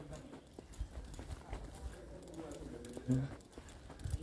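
Faint footsteps of a person walking while filming, irregular soft knocks, with faint voices in the background and a short spoken 'yeah' near the end.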